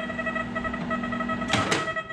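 Steady electronic tones at several pitches run throughout, from the nearby metal detector picking up interference in the kitchen. About one and a half seconds in come two sharp clicks as the microwave oven is started.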